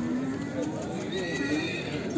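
A horse calls, a high neigh about a second in that lasts under a second, over men's voices.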